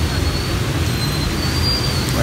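Steady low rumbling background noise with a faint, thin high tone above it.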